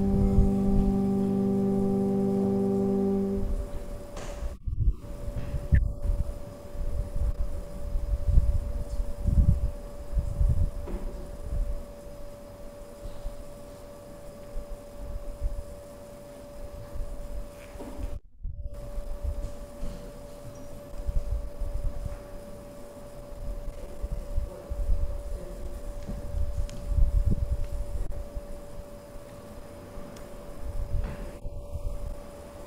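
A held musical chord of several steady notes ends about three seconds in. After it, a live sanctuary microphone carries low, uneven rumbling room noise over a steady hum. The sound drops out briefly twice, once about five seconds in and once just past the middle.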